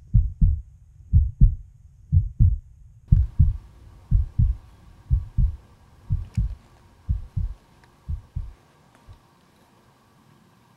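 Heartbeat sound effect: paired low thumps, lub-dub, about one beat a second, fading out near the end.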